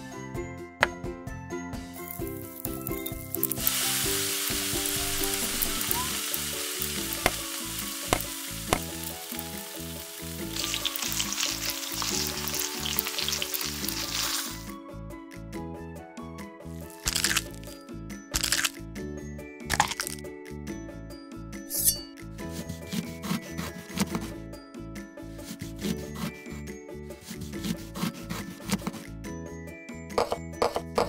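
Background music with a steady melody throughout. From a few seconds in, food sizzles in hot oil for about ten seconds, then cuts off. In the second half come sharp clicks, crackles and scrapes as shrimp are handled over a small glass bowl.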